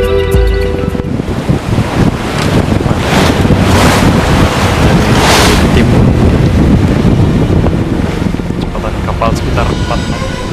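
Wind buffeting the microphone on the deck of a wooden sailing ship at sea, with the sea rushing along the hull, swelling louder several times in the middle. Music ends in the first second.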